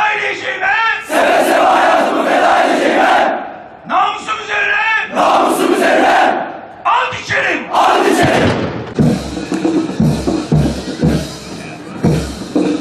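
A massed body of soldiers repeating the military oath in unison, line by line, each line first called out by a single leading voice. From about eight seconds in, low thumps, like drum beats, sound under the crowd.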